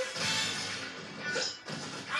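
Cartoon soundtrack from a television: music with a noisy crash-like sound effect lasting about a second and a half, then a short second burst near the end, heard through the TV's speaker across a room.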